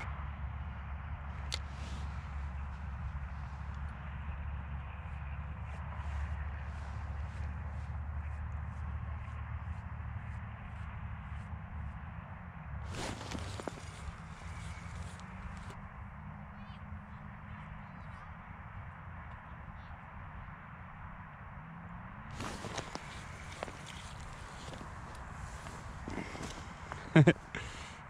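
Quiet outdoor ambience with a steady low rumble for the first twelve seconds or so, and two short bursts of rustling handling noise, about thirteen and twenty-three seconds in.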